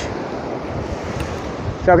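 Steady wind on the microphone mixed with surf breaking on the shore, an even noise with no distinct events.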